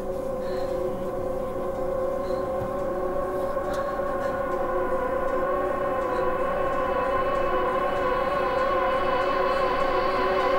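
Tense film-score drone: held tones that slowly swell, wavering unsteadily from about halfway through.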